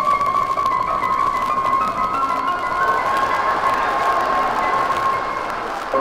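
Live dance-band orchestra playing: a long held high note over a line of notes stepping upward, with a hissing wash that swells and fades about halfway through.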